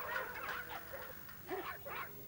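Television audio: short squawky, honking animal-like calls with quick rises and falls in pitch.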